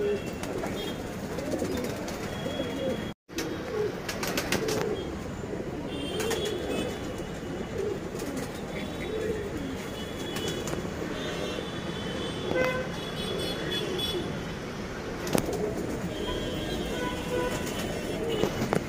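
Several domestic pigeons cooing in a cage, the coos overlapping and repeating. The sound cuts out completely for a moment about three seconds in.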